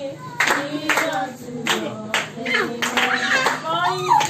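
A group of children clapping their hands in time, about two claps a second, while singing together.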